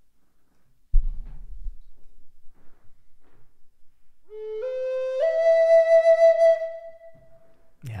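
A wooden Native American-style flute (a High Spirits flute) plays three notes stepping upward, the last held for about two seconds before it fades. About a second in, before the playing, there is a brief low thump.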